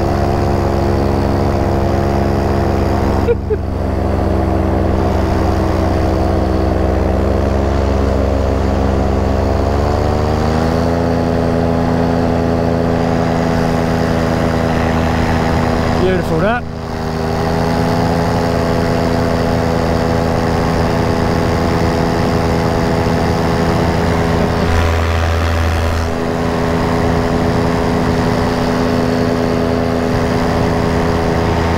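Paramotor engine and propeller running steadily in flight, heard close up from the harness. Its pitch steps up about ten seconds in, and the sound dips briefly twice.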